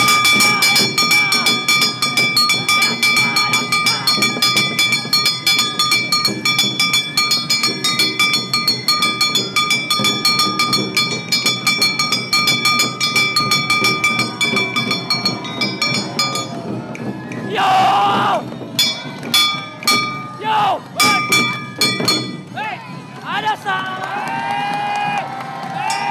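A Japanese hand-held brass gong (kane) beaten in a fast, steady rhythm, its strikes ringing on, until it stops about sixteen seconds in. Then loud shouts and cries from the performers and crowd follow.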